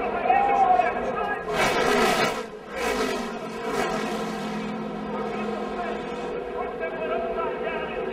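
NASCAR race truck engines running at a steady pitch, with two short bursts of rushing noise in the first few seconds as trucks crash and spin on the banking.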